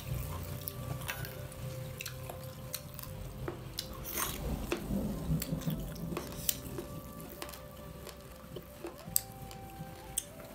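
Close-up eating sounds: chewing and mouth smacks, with fingers mixing dhido and pork gravy on steel plates making short wet clicks and scrapes, over faint background music.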